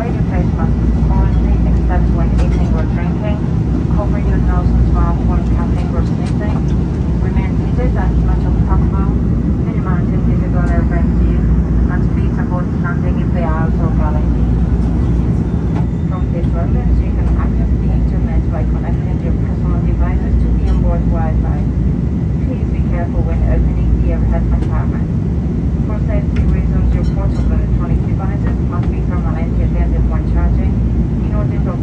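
Steady low rumble of an Airbus A330 airliner cabin in flight, with passengers talking indistinctly in the background.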